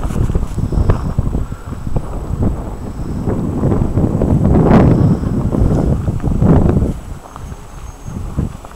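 Wind buffeting the camera microphone: an irregular low rumble that swells and fades in gusts, loudest around the middle and easing off near the end.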